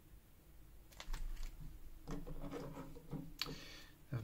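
Hands handling a Lego sticker sheet on a tabletop: a few light clicks about a second in, then soft rubbing and a brief papery rasp near the end.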